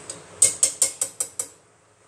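Metal vegetable masher knocked against a glass bowl: about six quick, sharp clicks within about a second.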